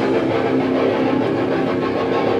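Heavily distorted electric guitars and bass in a live hardcore punk song, holding a loud sustained, droning chord without cymbals.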